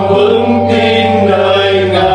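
Church choir singing a Vietnamese Catholic hymn in long, held chords, the harmony moving to a new chord about two-thirds of a second in.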